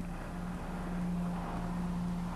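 A motor grader's diesel engine running, a steady low drone with a held hum.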